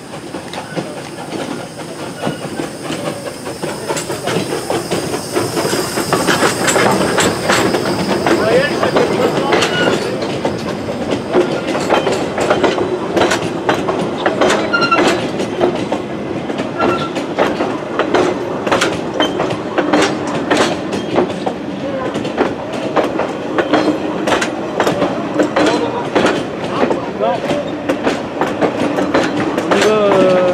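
Heritage steam train passing at close range: the sound grows louder over the first several seconds as the locomotive comes by, then the passenger coaches' wheels clatter steadily over the rail joints, with faint wheel squeal now and then.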